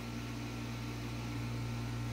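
Steady low hum with a faint even hiss, the constant background of a room with a running fan or similar appliance.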